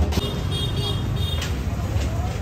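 Street noise: a steady low traffic rumble with voices in the background.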